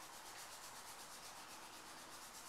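Near silence: a faint, steady hiss with no distinct events.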